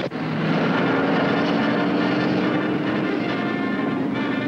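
Car engine running with a steady low drone as a car approaches along a road.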